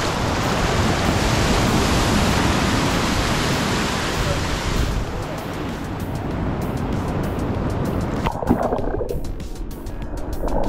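Sea waves washing up onto a sand beach, a loud hiss of surf for the first half that eases off. About eight seconds in the sound turns muffled and low as the microphone goes underwater.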